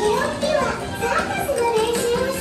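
High-pitched children's voices, their pitch sliding up and down, over faint background music.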